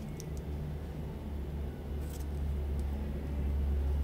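A low, steady rumble that swells toward the end, with a couple of faint light clicks from scissors being handled against the ribbon.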